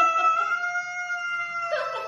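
A cat yowling at another cat: one long, drawn-out call that falls slightly in pitch, breaking into a rougher sound near the end.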